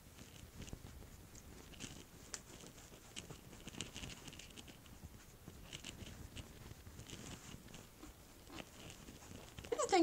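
Makeup brush blending liquid foundation on the face: faint, soft, scratchy brushing and rustling with a few small clicks, uneven and quiet throughout.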